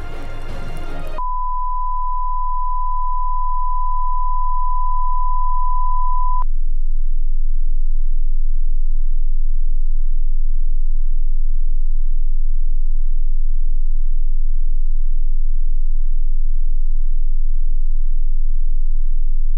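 Music cuts off about a second in and gives way to a steady, high electronic sine tone that holds for about five seconds and stops with a click. Under it, and on after it, a deep low electronic hum swells over the first several seconds and then holds steady as the loudest sound.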